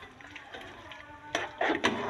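Jaggery syrup being poured quietly into a steel cooking pot. About a second and a half in come a few sharp metal clinks of a spatula against the pot as stirring begins.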